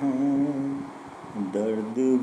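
A man singing a slow Hindi film-song melody with no words made out: he holds one long wavering note, drops away about a second in, then starts the next phrase.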